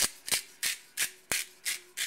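Hand-held sea salt grinder twisted over a pan of gravy: a run of short, evenly spaced rasps, about three a second.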